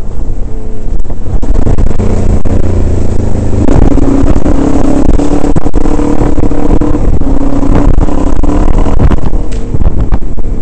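Dirt bike engine running under load on a rough dirt track, its note steadying and growing stronger about four seconds in, over a heavy low rumble of wind and jolts on the camera microphone.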